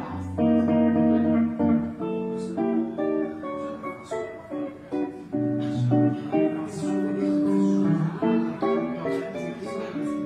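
Clean-toned hollow-body electric guitar playing jazz, moving through plucked chords and melody notes.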